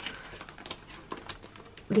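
Soft handling noise of paper and plastic binder pages being moved by hand, with a few small clicks.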